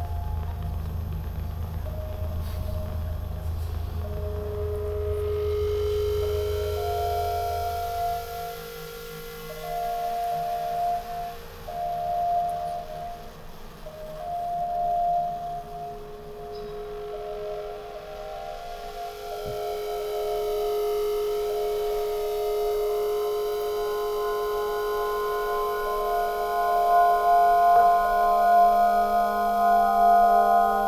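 Electroacoustic music of layered, sustained ringing tones. A low rumble under them stops about eight seconds in, and more tones join near the end as it grows louder.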